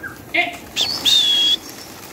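Whistling to send a flock of pigeons up off the loft: a quick rising-and-falling whistle, then a steady high whistle held for about half a second.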